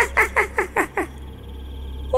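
A cartoon witch's cackling laugh: a quick run of short falling 'heh' notes, about five a second, that stops about a second in.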